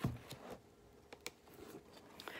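Faint rustling and a few light ticks as the paper pages and pockets of a handmade paper album are handled and turned.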